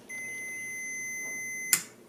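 A multimeter's continuity beeper gives a steady high beep for about a second and a half, a sign that the lamp switch's closed contacts complete the circuit. The beep ends with a click of the switch.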